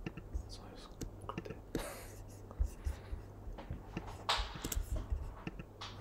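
A man breathing and whispering quietly to himself, with two soft hissing bursts about two seconds in and again near four and a half seconds. Scattered faint clicks and a steady low hum sit beneath.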